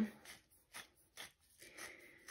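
Stainless steel pepper mill being twisted, grinding black peppercorns: faint, irregular crunching strokes.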